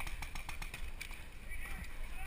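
Paintball markers firing in quick, irregular pops, thickest in the first second, with faint distant shouting from players.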